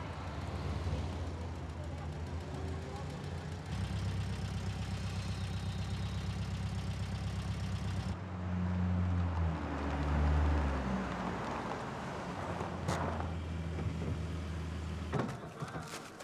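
Car engine idling with a low, steady hum that rises and grows louder for a moment about ten seconds in, as if revved. A sharp click comes about thirteen seconds in.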